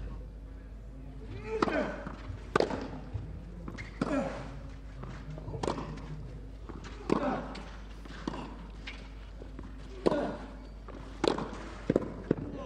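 A tennis rally: sharp racket strikes on the ball about every second to second and a half, most of them followed by a short grunt from the hitting player.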